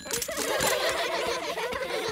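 Buzzing of a swarm of honeybees from a beehive, a continuous wavering drone that starts just after the opening.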